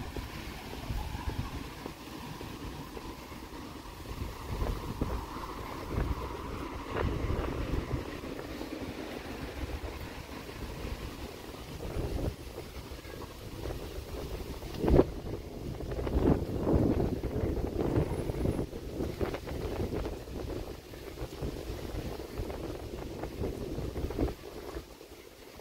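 Wind buffeting the microphone over outdoor city street ambience, with a sharp knock about fifteen seconds in.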